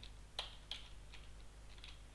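A computer keyboard being typed on: about five faint single keystrokes, unevenly spaced.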